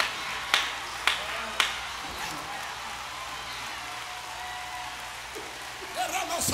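Four sharp, evenly spaced hits about half a second apart, followed by a steady hiss of room and playback noise.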